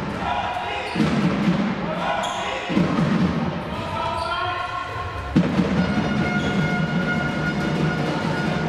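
Sound of a basketball game in a sports hall: a basketball bouncing on the court, with voices and music mixed underneath. Sudden low thumps land at about one second in, near three seconds, and a little past five seconds.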